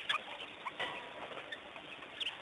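Several short, high, squeaky animal chirps, some dropping quickly in pitch, over a steady outdoor background hiss.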